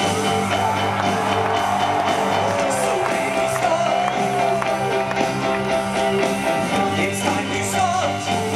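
Live rock band playing a full-band passage on electric guitars, drums and keyboard, with a steady bass line and a wavering melody line in the middle.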